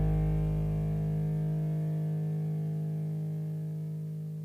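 The final chord of a pop-punk song held and ringing out on distorted electric guitar, slowly dying away with no new notes; the bass dies out about halfway through.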